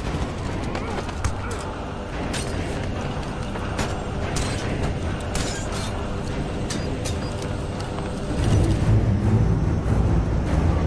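Film sound mix of a steady aircraft drone and music, broken by many sharp metallic clicks and clanks. A deeper rumble swells near the end.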